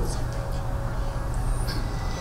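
A steady low rumble with a faint hiss over it and no clear strikes or beat.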